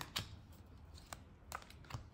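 Oracle cards being flicked through in the hand, a few light, sharp clicks as cards slide off the front of the deck.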